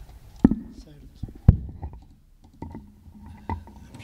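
Sharp knocks and bumps from a microphone being handled while the speaker's laptop is set up, the two loudest about half a second and a second and a half in, with softer knocks later. Low murmured voices run beneath.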